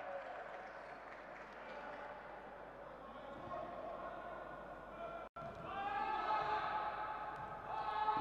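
Quiet ambience of an indoor basketball hall during a pause for free throws: a faint, echoing background of distant voices, which cuts out for a moment about five seconds in.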